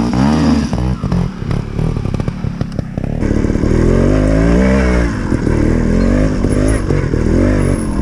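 GasGas TXT 250 two-stroke trials motorcycle engine, revving in quick up-and-down blips at low speed, then pulling steadily as the bike rides along a rough trail. Short knocks sound among the blips in the first few seconds.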